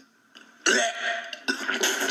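A person making two loud, rough throaty sounds in quick succession, the second starting about half a second after the first ends.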